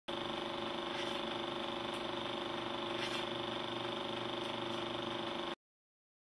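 Steady machine hum with several constant tones and a few faint clicks, cutting off suddenly about five and a half seconds in.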